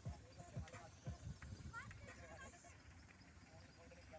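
Faint, distant voices over quiet outdoor background noise, with a few brief low thumps in the first second or so.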